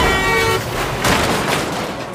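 A vehicle horn sounds for about half a second over a crash as a passing van strikes a car's open door. A second crash comes about a second in as the door is torn off and lands in the road, and the noise then fades.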